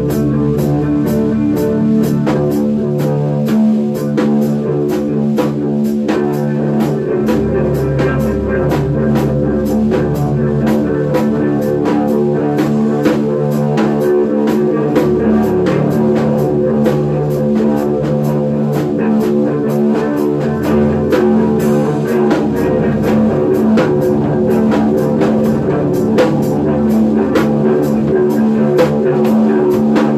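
Rock band playing without vocals: guitar and bass over a drum kit keeping a steady beat.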